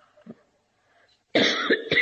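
A person coughs: a sudden loud burst about one and a half seconds in, after a near-silent pause.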